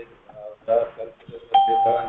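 A single steady electronic beep, one clear pitched tone, comes in suddenly about one and a half seconds in over voices and lasts just under a second.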